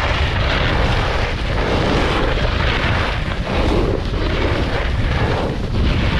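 Snowboard sliding and scraping over hard, icy groomed snow while riding, with wind buffeting the camera microphone. A loud, steady rush with no break.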